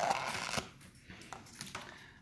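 Clear plastic deli-cup lid being handled and pried off: a rustle with small plastic clicks in the first half second, then a few fainter clicks.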